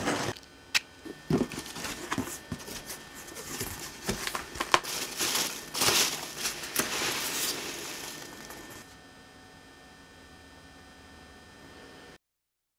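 A cardboard shipping box being handled and hands rummaging through loose foam packing peanuts: irregular crinkling and rustling with a few sharp clicks, dying away about nine seconds in.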